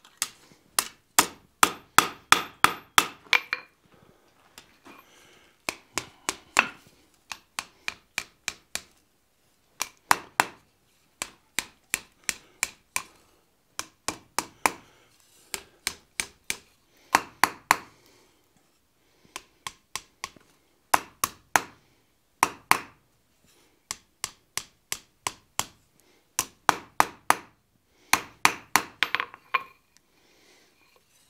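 Blacksmith's hammer striking a hot bar on the anvil face, shaping a spiral scroll. The light, quick blows come in runs of several strikes, about four or five a second, with short pauses between runs.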